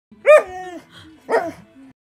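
A dog barking twice, about a second apart; the first bark is longer, its pitch dropping and holding briefly.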